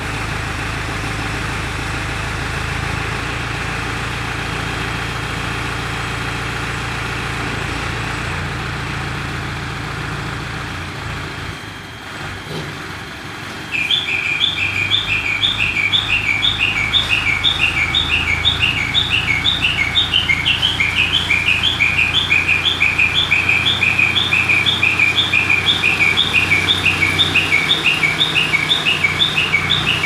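Diesel engine of an Escorts Hydra 14 crane running steadily. About 14 seconds in, a loud electronic chirping alarm starts suddenly and repeats about three chirps a second, each a short two-note chirp, over the engine.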